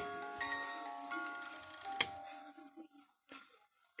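Music box of a vintage carriage clock playing plucked metal notes that ring and fade. There is a sharp click about two seconds in, and the tune dies away soon after, the mechanism still working.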